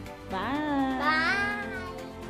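A young girl's high, drawn-out sing-song voice, rising and falling twice, with the second note held until near the end.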